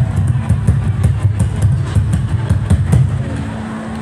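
Live music for a stage dance, driven by rapid low drumbeats that die down about three seconds in.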